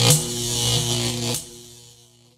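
Synthesized logo sting: a loud electric crackle and hiss over a low humming chord, with a sharp hit just after the start and another about a second and a half in, then dying away.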